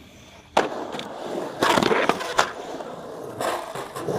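Skateboard landing with a sharp slap about half a second in, after a brief quiet while it is in the air. Its wheels then roll across the concrete of an empty pool, with further knocks and clacks of the board.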